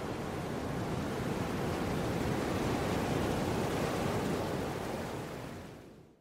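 A steady rushing noise with no clear notes, ending a music track and fading out to silence near the end.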